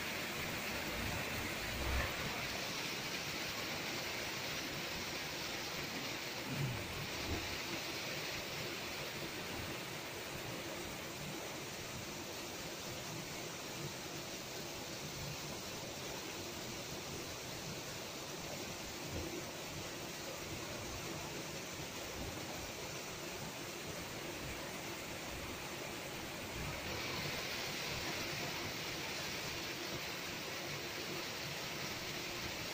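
Steady rush of muddy floodwater pouring over the edge of a stone-faced culvert wall, a little brighter near the end.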